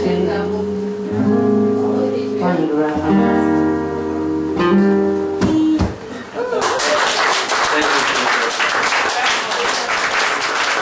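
Acoustic guitar ringing out the closing chords of a song, the last chord stopped about six seconds in. Audience applause follows.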